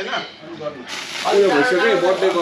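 Meat sizzling over charcoal on a mesh grill: a steady hiss that starts suddenly about a second in, with voices talking over it.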